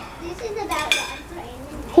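Metal grill tongs clinking against the grill and a plate as grilled chicken is lifted off, a short clatter about a second in.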